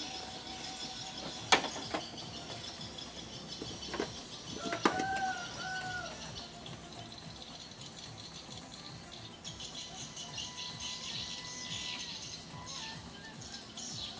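A few sharp clicks and knocks from hands working on a car's wiring and switch panel, with a short squeak about five seconds in and high twittering in the background in the second half.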